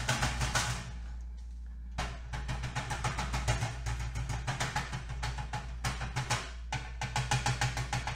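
Alcohol ink applicator with a felt pad dabbing rapidly on metal tree cutouts, a quick run of light taps at about eight to ten a second. The tapping pauses for about a second near the start and breaks briefly near the end.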